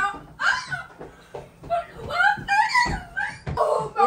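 Laughter mixed with short wordless vocal cries, some rising in pitch, from people reacting to a boy eating a very hot chip.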